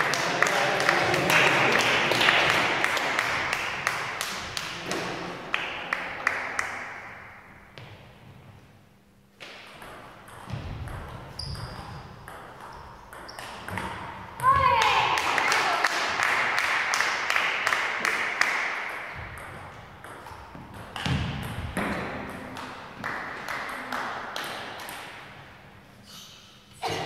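Table tennis ball clicking sharply off bats and the table, with voices and shouts ringing out in a large echoing hall.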